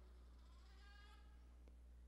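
Near silence: room tone with a steady low hum, and a very faint high pitched sound about a second in.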